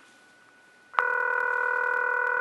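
Telephone ringback tone, the ringing that a caller hears while the call connects: after a near-quiet first second, a steady tone starts about a second in and holds.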